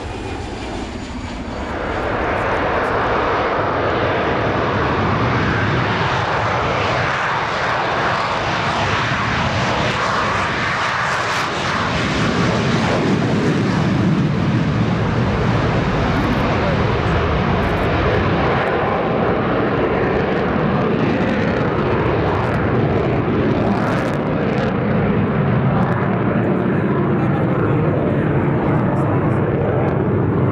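JF-17 Thunder fighter's Klimov RD-93 afterburning turbofan at high power: a loud, steady jet roar that swells about two seconds in as the aircraft takes off and pulls into a steep climb.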